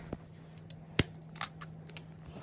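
A few sharp clicks and taps, the loudest about a second in, over a faint steady hum.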